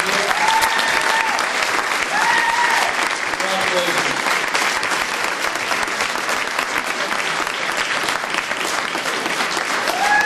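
Audience applauding steadily, with a few voices calling out in the first four seconds.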